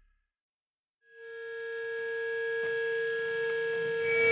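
About a second of silence, then a single held synthesizer note fades in and sustains steadily: the quiet keyboard intro of a heavy-rock song.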